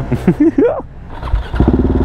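KTM Duke 690 single-cylinder engine through an Akrapovic exhaust, coming in loud about one and a half seconds in with a steady note as the bike moves off in traffic.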